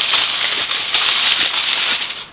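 Aluminium foil crinkling and crackling steadily as it is folded and pressed around a baking tray, stopping near the end.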